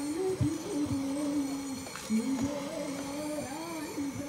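A single voice singing a slow melody in long held notes, with a few low thumps underneath.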